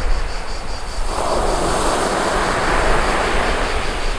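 Sea waves washing onto a shore, one surge swelling up about a second in and easing off near the end, with wind rumbling on the microphone.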